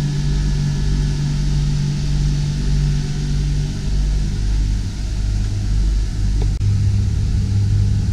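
Marine air conditioners running, a Dometic 12,000 BTU unit and a compact Mabru 4200 BTU unit: a steady compressor-and-blower hum with airflow hiss. The low hum shifts to a deeper tone about halfway through.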